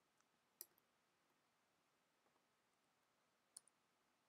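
Near silence with two faint clicks, about half a second in and near the end, made while selecting text at a computer.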